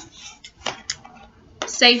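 Scissors being picked up and handled: a few short metal clicks in quick succession. A woman starts speaking near the end.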